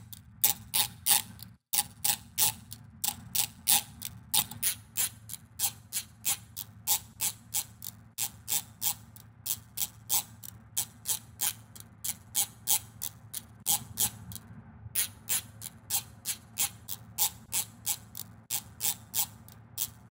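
Teeth of a hair comb strummed as an instrument, chopped into a rhythmic pattern and processed: noise-suppressed, pitched down to G sharp, with a very subtle short delay and saturation. It plays as a steady run of sharp plucked clicks, about three a second, over a faint low hum, with a brief break about three quarters of the way through.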